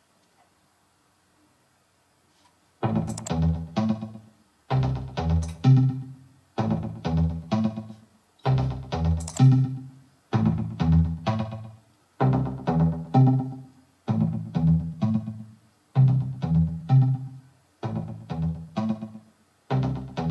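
Progressive house pluck synth part playing back from the DAW, entering after about three seconds of silence, in repeating phrases about two seconds apart. Automation filters and EQs some of its frequencies out and lowers its gain to leave room for the vocals, so it sounds dainty.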